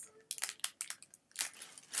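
Clear plastic packaging of small bagged toys crinkling as it is handled: a run of short crackles and clicks, with a louder rustle about one and a half seconds in.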